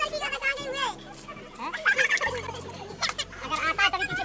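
Several children's high-pitched voices chattering and calling out excitedly, without clear words.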